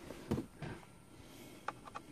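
Faint handling noise: a soft knock about a third of a second in and a few light clicks near the end, as a laptop and its cable are moved about.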